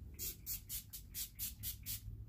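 Farsali Rose Gold 24K skin mist pump sprayer misting the face: a quick series of about eight short hissing sprays, roughly four a second.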